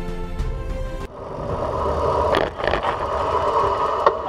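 Background music that cuts off abruptly about a second in, then a steady rushing noise of a vehicle running close by on the road.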